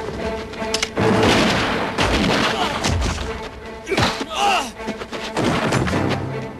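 Dramatic soundtrack music with several dull thuds from an action scene.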